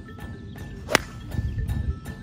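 Golf iron striking a ball: one sharp, crisp impact about a second in, over background music with a light steady beat.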